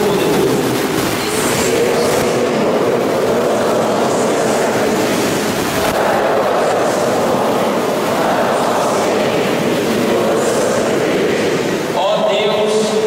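A congregation reciting aloud in unison, a steady blurred murmur of many voices speaking together in a large church.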